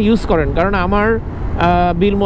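A man talking in Bangla, with a short pause a little past halfway, over a steady low rumble of wind and road noise from a moving motorcycle.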